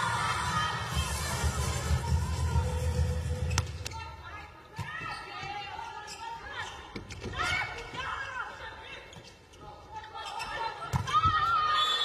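Indoor arena sound during a volleyball rally: sharp hits of the ball, a low rumbling beat from the stands that fades about four seconds in, and shouting voices, all ringing in a large hall.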